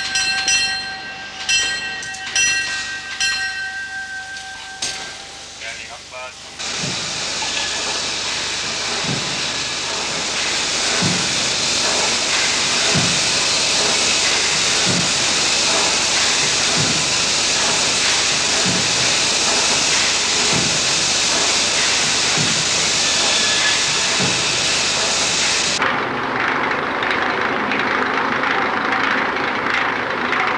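A mine shaft signal bell rings about four strikes in the first few seconds. From about six seconds in, a steam winding engine runs with a loud, steady hiss of steam and slow, even thuds roughly every two seconds. Near the end the hiss stops and a lower rushing noise takes over, as the hoist runs on.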